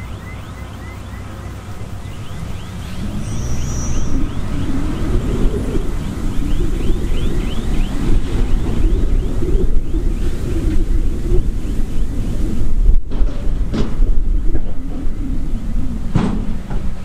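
Heavy diesel construction machinery, dump trucks and a bulldozer, running with a low rumble that grows louder after about two seconds. In the middle a quick clatter repeats about four times a second.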